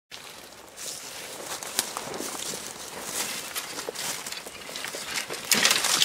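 Footsteps crunching through dry leaves and brush, with twigs snapping, on the way down a ditch bank. Near the end comes a louder scraping rush as a foot slips on the slick, muddy bank.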